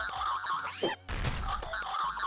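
Cartoon sound effect of very fast typing on a keypad, over background music.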